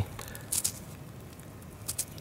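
Faint scratchy rustle of dry soil as fingers handle and brush dirt from a freshly dug copper large cent, with a short scrape about half a second in and a small click near the end.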